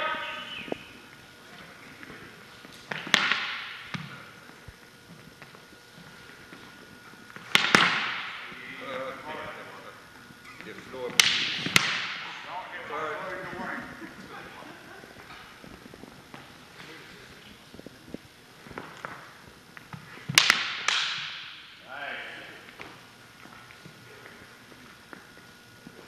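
Longswords clashing in sparring: five sharp strikes, two of them close together near the middle, each with a short ringing tail, between quieter stretches of movement.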